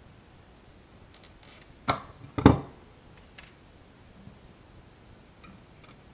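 Two sharp clicks about half a second apart from tweezers and a soldering iron tip working a header pin out of a small circuit board, the second the louder, with faint handling rustle before them and a few light ticks afterwards.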